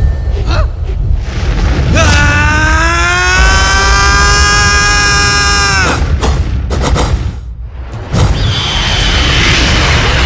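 Cartoon action sound effects over dramatic music: a continuous deep rumble with booms, and a long pitched screech that swoops up about two seconds in, holds for some four seconds and drops away into sharp hits, followed by a whooshing rush.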